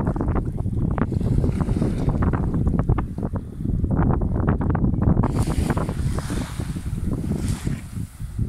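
Wind buffeting the microphone throughout, a heavy rumble with gusty crackle. From about five seconds in, a brighter hiss of small waves washing up the sand lasts a couple of seconds.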